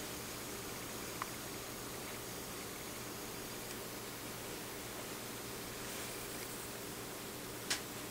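Steady room hiss with a faint low hum, and two small clicks, one about a second in and a sharper one near the end.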